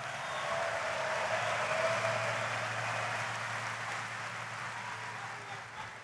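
A large audience applauding and cheering, swelling over the first couple of seconds and then dying away.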